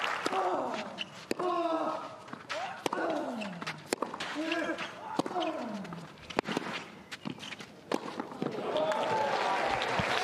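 Tennis rally on a clay court: sharp racket-on-ball strikes about every second to second and a half. After most strikes comes a short vocal grunt that falls in pitch.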